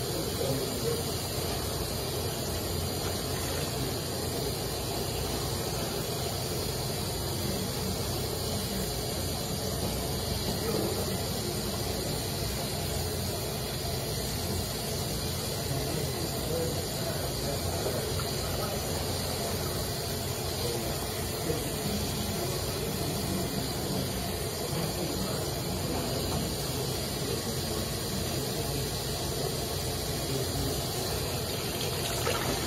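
Bathroom sink tap running steadily onto clothes being scrubbed by hand, a constant rush of water.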